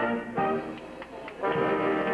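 Dance orchestra with brass playing the closing bars of a slow dance tune, moving into a full, held final chord about a second and a half in.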